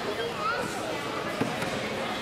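Indistinct chatter of several voices in a large gymnasium, with a single thump about one and a half seconds in.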